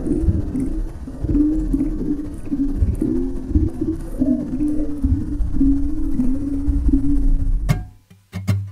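Muffled, wordless voice sounds recorded underwater, wavering and breaking, over a low rumble of water against the camera housing; it cuts off abruptly just before the end.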